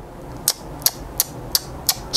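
Five short, sharp clicks, evenly spaced at about three a second.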